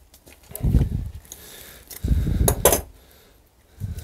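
Metal hand tools being handled and slid into a nylon tool pouch: muffled knocks, with a couple of sharp metallic clinks a little after two and a half seconds in.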